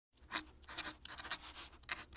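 Fountain pen nib scratching across paper while writing cursive, an irregular run of short scratchy strokes, several a second.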